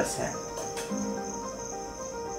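Soft background music with held notes that change pitch every so often, over a faint steady high-pitched tone.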